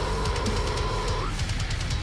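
Heavy metalcore song playing: distorted guitars and a pounding drum kit in a heavy breakdown. A held high note sounds over it and stops a little after a second in.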